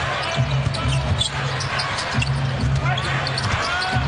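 Crowd noise in a basketball arena during live play, with a basketball being dribbled on the hardwood court and music from the arena speakers underneath.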